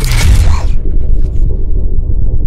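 Intro logo sound effect: a harsh, crackly burst of noise that cuts off under a second in, over a loud, deep bass rumble that holds steady.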